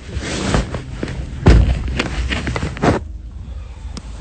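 Muffled rustling and knocking on a covered phone microphone, with a heavy thump about a second and a half in and another about three seconds in, after which the rustling falls quieter.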